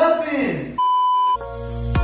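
A voice falling in pitch, cut off by a steady high censor bleep lasting about half a second, after which electronic intro music comes in.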